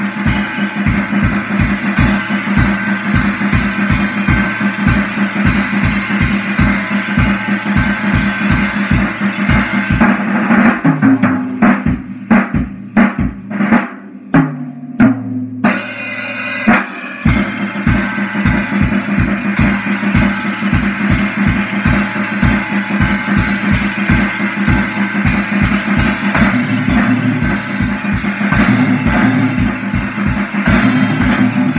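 A drum kit played live: a steady beat of bass drum and snare under continuous cymbal wash. About ten seconds in, the beat breaks into a sparser passage of separate strokes for several seconds, then the full groove comes back.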